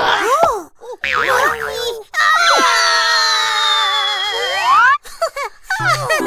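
Cartoon sound effects and wordless character voices: short sliding, questioning vocal sounds, then a long wobbling, whistle-like tone lasting about three seconds that slowly falls and ends in a rising slide before cutting off suddenly, as a character swells up like a balloon.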